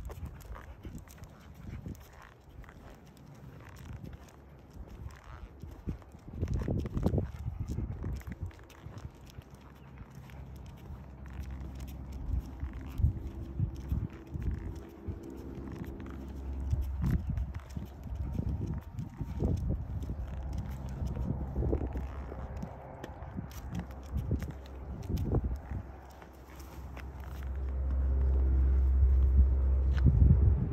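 Wind rumbling on a phone microphone outdoors, swelling twice, with scattered footstep scuffs and rustles as a dog is walked on a leash over pavement and grass; a faint steady hum sits under the middle stretch.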